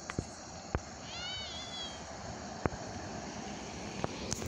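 Outdoor evening background: a steady hiss with a few sharp clicks. About a second in comes a short high call that arches up and falls away, lasting under a second.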